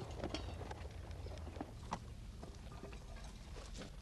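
Faint scattered clicks, taps and rustles from a file of soldiers handling their gear as they draw paper cartridges from leather cartridge boxes during musket loading drill, over a low steady hum.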